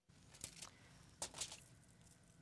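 Near silence: quiet room tone with a few faint soft taps, two about half a second in and two more about a second and a quarter in.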